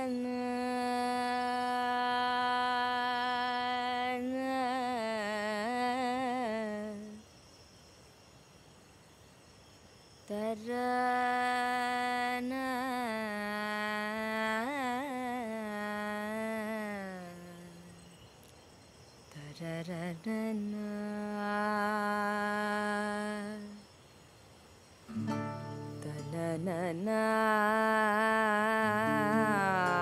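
A woman humming a raga melody in long held and sliding notes, in four phrases with short pauses between them. Near the end a lower sustained part joins underneath.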